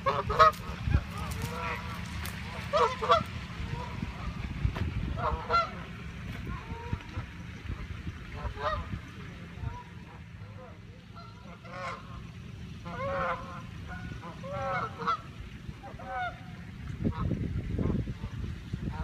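Canada geese honking, short calls every second or two, over a low rumble.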